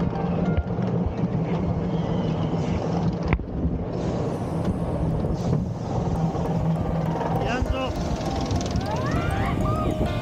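Roller coaster car running along its track, with riders giving rising and falling shrieks near the end.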